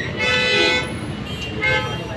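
A vehicle horn honks twice over a street and crowd background: a steady toot of about half a second, then a shorter one about a second later.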